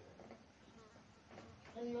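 Quiet room tone with a faint low murmur, then a woman starts speaking in Swahili near the end.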